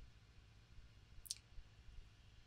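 Near silence with a single short, faint click a little over a second in.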